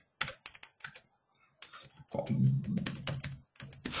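Typing on a computer keyboard: quick runs of key clicks, with a pause of about half a second about a second in, then a denser run of typing.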